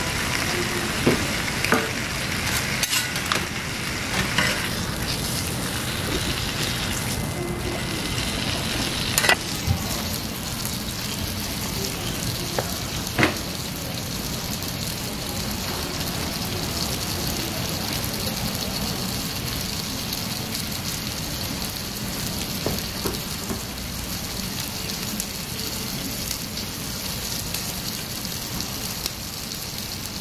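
Bacon, egg mixture and buttered bread sizzling on a flat-top griddle: a steady frying hiss, with a few sharp knocks in the first half, the loudest about nine and thirteen seconds in.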